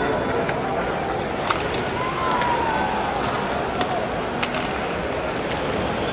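Ice hockey arena crowd noise after a goal: a steady din of many voices, with a few sharp knocks through it.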